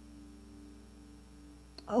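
A soft, steady sustained chord held on a keyboard under a spoken prayer, several low notes ringing unchanged; a woman's voice comes in with "Oh" right at the end.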